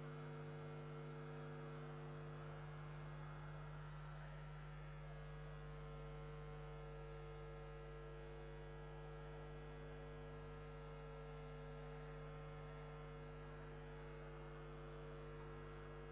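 Quiet, steady electrical mains hum, holding several fixed pitches without change, with nothing else above it.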